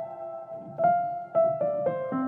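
Background music: a piano playing a melody of single notes struck one after another, each ringing and fading.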